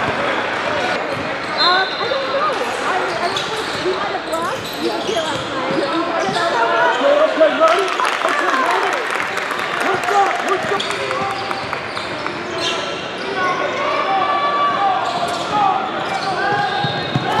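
Live game sound in a basketball gym: a basketball bouncing on a hardwood court, with short sneaker squeaks and the voices of players and spectators.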